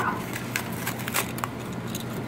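Plastic and cardboard toy packaging crackling in short, irregular snaps as it is torn open by hand, over a steady low hum.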